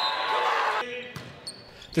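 Live game sound in a gymnasium during a volleyball match: crowd and players' voices echoing in the hall. The sound drops suddenly just under a second in, leaving a faint room sound.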